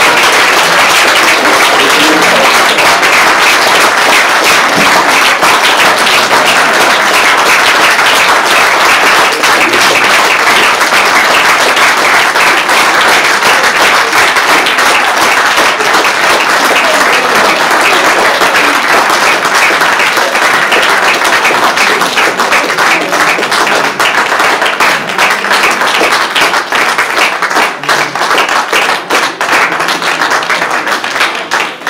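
Audience applause, long and dense, thinning into more scattered separate claps over the last few seconds.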